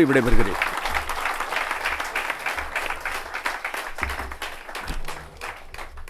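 Audience applauding, dense clapping that slowly dies away toward the end.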